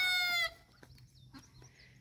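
A hen's call: one held note of about half a second, falling slightly in pitch, then faint short high chirps.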